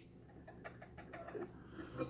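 Faint, scattered small clicks and taps from a stainless steel tumbler and its slip-on handle being handled.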